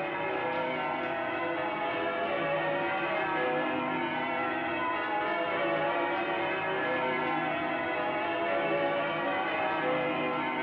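Many church bells ringing at once in a continuous peal, their tones overlapping into one dense wash without a break.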